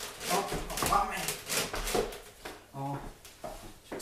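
Feet knocking on a wooden floor during fast, explosive TRX suspension-strap sprinter-start lunges, a quick irregular series of thuds, with short voiced breaths and grunts of effort.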